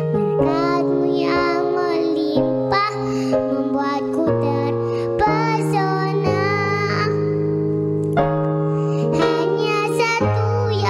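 A young girl singing a worship song, her voice over keyboard accompaniment holding long, sustained chords.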